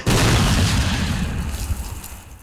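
Artillery boom sound effect: a sudden loud blast at the very start that rumbles and slowly fades over about two seconds.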